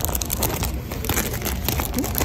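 Clear plastic packaging crinkling as it is handled in the hands, a dense run of irregular crackles.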